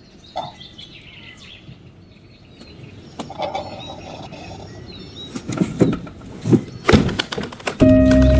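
Birds chirping in the background of a quiet outdoor ambience, with a few sharp knocks and thumps near the end.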